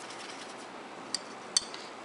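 Two light clicks about half a second apart, from a paintbrush tapping against plastic watercolor containers, over faint steady room hiss.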